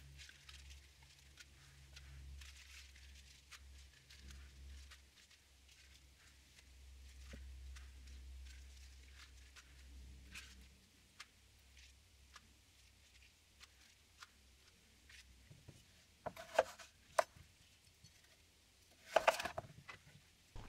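Mostly very quiet, with faint rustles and soft ticks of lettuce leaves being handled and laid on a plate. Near the end come a few sharp knocks and a louder cut as a kitchen knife starts slicing a cucumber on a wooden chopping board.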